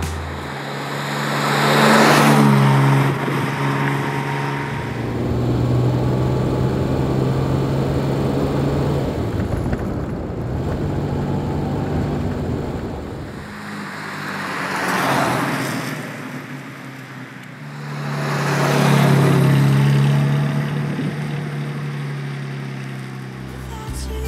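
Jaguar XK150's twin-cam straight-six engine running as the roadster is driven. A steady engine note swells loud and falls away about two seconds in, and again around fifteen and nineteen seconds.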